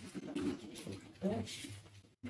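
Speech: a brief, hesitant 'um' about a second in, amid other quiet talk in a meeting room.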